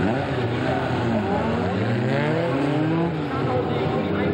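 Several hot rod race cars built on VW Beetle bodies revving together, their engine notes rising and falling over one another as they run in a pack.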